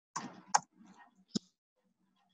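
Two sharp clicks at a computer about 0.8 s apart, the first the louder, after a short soft rustle.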